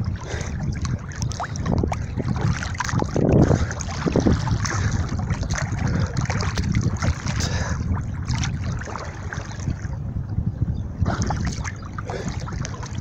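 Water splashing and sloshing right at a phone's microphone held at the surface by a swimmer, with irregular splashes from the swimming strokes and wind rumble on the microphone.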